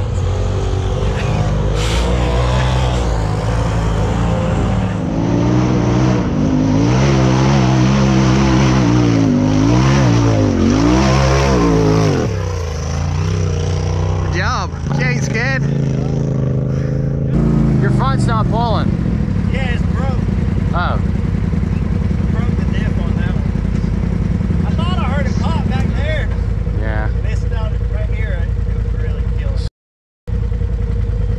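Side-by-side UTV engine revving up and down hard for about twelve seconds as the machine works up a rocky ledge. After a cut, an engine idles steadily with faint voices over it.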